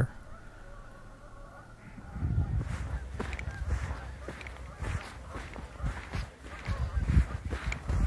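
A distant flock of waterfowl calling across a lake, a faint steady honking chorus, for about the first two seconds. From about two seconds in it gives way to a low wind rumble on the microphone with scattered light knocks.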